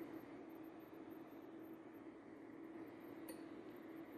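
Faint steady hum of a Duxtop 9600LS induction cooktop running on power level 10 under a steel pan, with one faint light click near the end.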